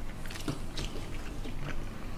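Close-miked mouth chewing a mouthful of food: a few soft, wet clicks and smacks at irregular intervals.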